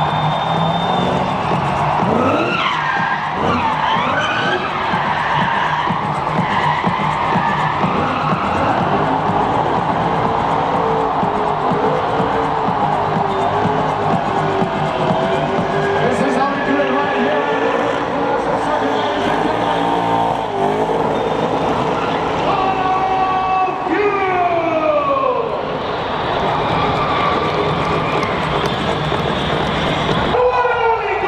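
A drift car's engine revving hard while its tyres squeal through a long smoky slide, the pitch sweeping up and down several times. Crowd voices and some music run underneath.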